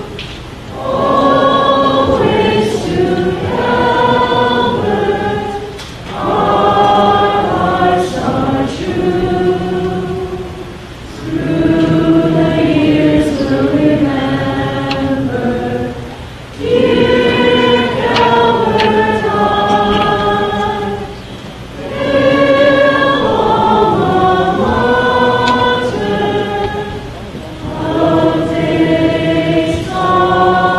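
A group of voices singing the school alma mater together, with two singers at the microphone. The notes are held in phrases about five seconds long, with a short breath between phrases.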